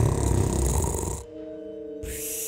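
A cartoon ghost's voiced yawn, breathy and loud, lasting about a second and a half and stopping about a second before the end, over soft sustained background music.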